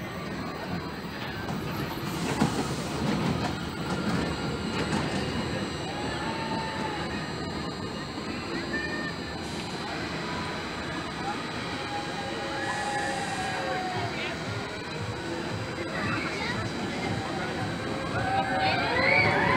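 Small steel family roller coaster train running around its track, a steady rumble of wheels on the rails, with people's voices in the background.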